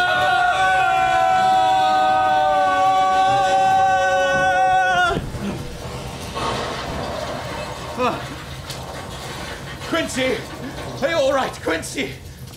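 Two men's voices holding one long, loud cry together at a nearly steady pitch, cut off suddenly about five seconds in. After that come only quieter, scattered short sounds.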